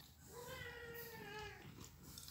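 A kitten meowing once, a single faint, long call that falls slightly in pitch.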